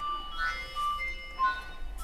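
A tinny electronic tune of single beeping notes, stepping up and down in pitch, with the same short phrase repeating.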